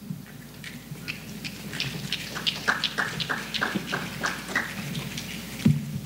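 A run of light, sharp taps, about three a second, over a steady low room hum.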